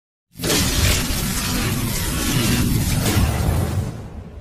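Cinematic intro sound effect: a dense, noisy burst with a deep rumble underneath that starts suddenly about a third of a second in, holds for about three seconds and fades out near the end.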